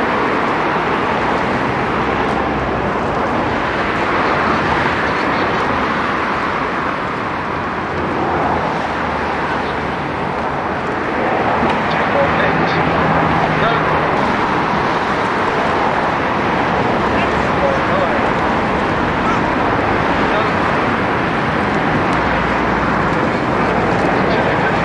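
Steady outdoor hubbub: indistinct voices mixed with a continuous traffic-like noise, with no distinct events standing out.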